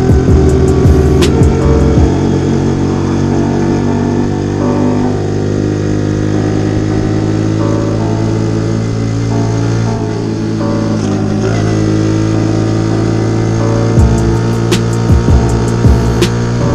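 Music with held chords and drum hits near the start and again near the end, laid over the steady running of a Honda Dax ST50's 50cc four-stroke single-cylinder engine while riding.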